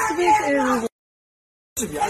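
An indistinct person's voice speaking in short bending phrases, cut off abruptly just under a second in by a stretch of dead silence lasting nearly a second, after which voices resume.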